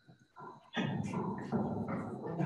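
Soundtrack of a film clip playing back from a computer: near silence, then about three-quarters of a second in a dense, rough non-speech sound starts and carries on, with a faint steady high tone underneath.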